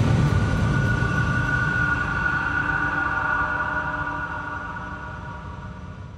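Tail of a TV show's logo sting: a held, low rumbling drone with a few sustained high tones, slowly fading out.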